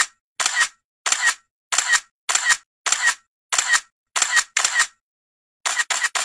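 Camera shutter sound effect, clicking evenly a little under twice a second, each click a quick double snap; near the end a short pause, then a fast run of four clicks.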